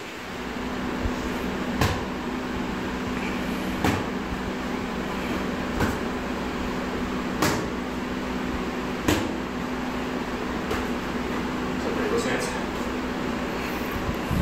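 Boxing gloves slapping sharply as punches are thrown, blocked and countered, about six single smacks roughly two seconds apart, over a steady low hum.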